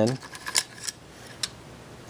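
AR-15 bolt carrier group and charging handle sliding out of the upper receiver: a handful of sharp metal clicks and scrapes.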